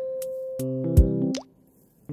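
Background music with a beat. A quick rising bloop comes just before the music drops out about one and a half seconds in.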